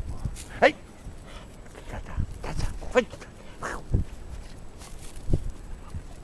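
A dog barking twice in short, sharp barks around the middle, with a couple of dull thumps on grass after them.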